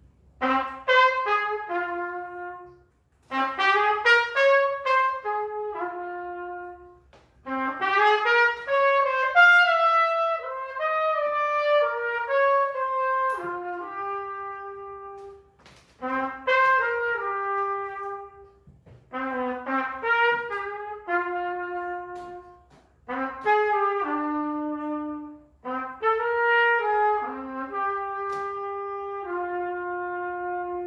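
Unaccompanied solo trumpet playing about seven phrases, each falling to a long held low note, with short pauses between them.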